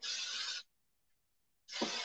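Aerosol hairspray can spraying onto hair in short hissing bursts: one burst of about half a second at the start and another beginning near the end.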